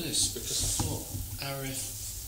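Speech only: a few low, unclear spoken words with hissy sounds, over a steady low rumble.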